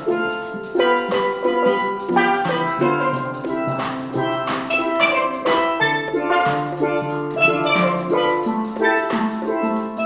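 A steel pan ensemble playing an upbeat tune: tenor and bass steel pans sound struck, ringing notes, with a drum kit keeping the beat.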